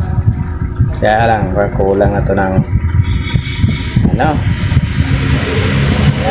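A voice speaking in short bursts, about a second in and again near the middle, over a continuous low rumble.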